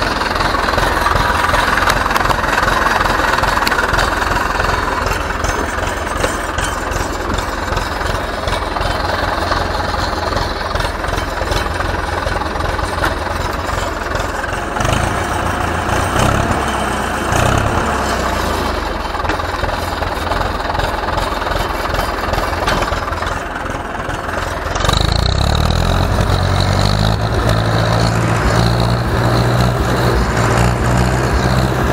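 Ursus C-360 tractor's four-cylinder diesel engine running steadily at low speed. About five seconds before the end its speed picks up and it runs louder.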